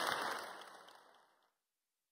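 Audience applauding, the applause fading out over a little more than a second.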